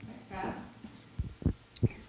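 A faint, distant voice speaking briefly, followed by a few short, low thuds in the quiet of a small room.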